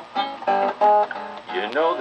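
Acoustic guitar played in a blues style, with a man's singing voice coming back in near the end.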